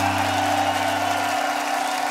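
A live band's final chord ringing out as a steady held drone. Its deep bass note cuts off about one and a half seconds in, while higher tones hold on over crowd applause and cheering.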